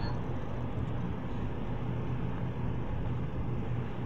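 Steady low hum and hiss of background room noise, with no voice and no sudden sounds.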